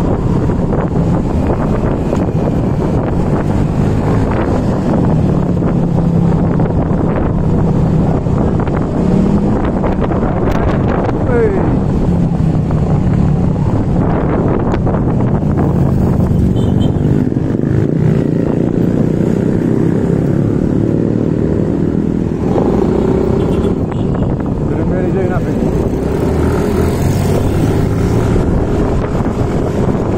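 Yamaha motor scooter riding along in traffic: its small engine running steadily under way, with wind noise on the microphone and other motorcycles and cars around.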